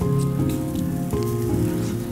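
Charcoal grill sizzling and crackling with food cooking on it, under soft background music of held notes that change chord twice.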